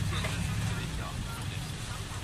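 Steady low rumble of street noise, with voices in the background.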